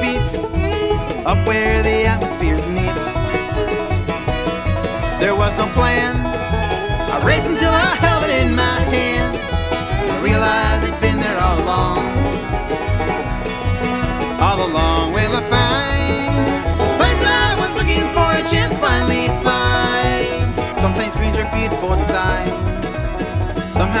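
Bluegrass band playing an instrumental stretch of a song between sung lines: fiddle, banjo, acoustic guitar and upright bass over a steady bass rhythm.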